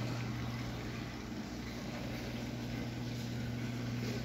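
Steady low hum of an aquarium's water pumps and filtration, with an even rush of moving water over it.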